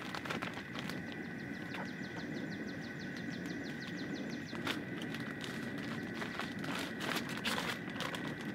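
Plastic shrink-wrap freezer bag rustling and crinkling as a plucked chicken is worked into it, with sharp handling clicks that thicken near the end. Behind it a steady high whine runs on, and a fast, even run of ticks sounds from about one second in to about four seconds.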